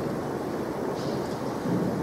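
Low, steady rumbling background noise in a pause between sentences, with no speech.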